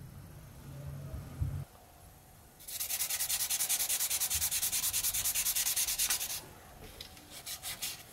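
Sandpaper rubbed quickly back and forth by hand along the edge of a small wooden strip, about five strokes a second for nearly four seconds, then a few more short strokes near the end. A soft knock comes before the sanding starts.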